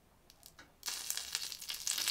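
Hot cooking oil, about 200 °C, poured from a kettle onto the scored skin of a pig's head, bursting into loud sizzling and crackling with sharp pops about a second in as the skin starts to fry. A few faint clicks come just before.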